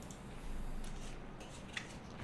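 Faint rustling of tarot cards being handled, with a light click near the end.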